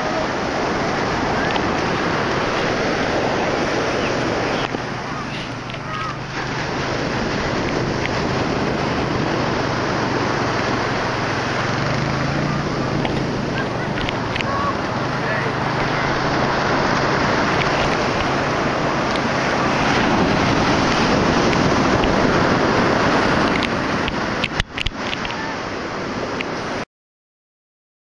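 Ocean surf breaking and washing up the beach, mixed with wind on the microphone. A faint steady low hum sits under it through the middle, and a few sharp knocks of handling noise come near the end.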